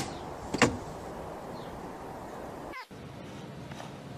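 A cat leaping off the plastic lid of a garden water butt: a short scuffing push-off at the start, then one sharp thump a little over half a second in as it lands.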